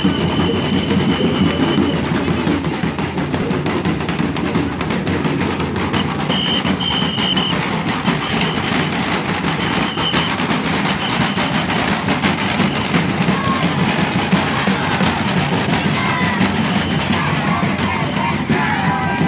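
Papuan tifa hand drums beaten in a fast, continuous rhythm by a group of marching performers, with crowd voices throughout. A short, high, steady tone sounds several times: near the start and around six and ten seconds in.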